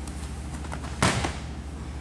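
A single sharp thud of a body or hand on the wrestling mat, with a short ringing tail, about halfway through, over a steady low hum.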